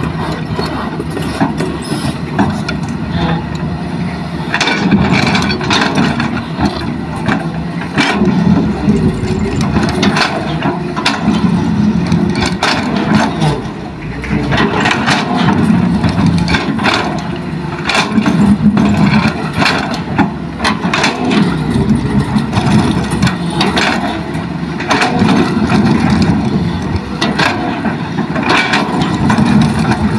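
Hitachi hydraulic excavator's diesel engine running, swelling again and again under hydraulic load as the machine digs and swings. Scattered clanks and clatter of the steel bucket and rocks cut through at irregular moments.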